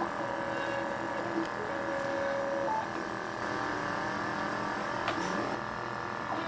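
Hyrel Engine HR 3D printer running a print: its stepper motors whine at several steady pitches, which shift and glide up and down a little past the middle, over the steady hum of the machine.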